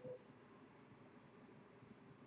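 Near silence: faint room tone, with a brief faint sound at the very start.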